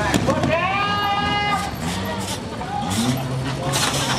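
A person's long, high-pitched shout that rises at the start and then holds for over a second, with other voices talking around it.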